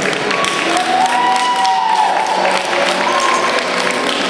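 Audience clapping steadily in a large hall, with music playing over it.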